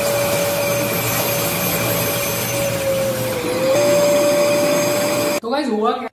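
Agaro wet-and-dry vacuum cleaner running and sucking water up through its hose, a steady motor whine over rushing air. The whine dips slightly, then steps up in pitch and gets louder about four seconds in, and the sound stops suddenly near the end.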